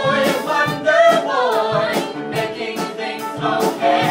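Several voices singing a musical-theatre song together, accompanied by piano, cello and drums, with regular drum hits.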